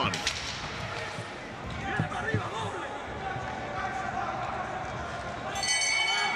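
Boxing ring bell ringing near the end, a cluster of steady high tones that marks the start of round two, over arena room tone with distant voices and a few dull thuds.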